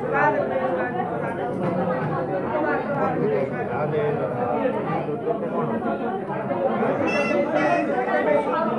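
Several people talking over one another: general chatter, with a higher voice standing out about seven seconds in.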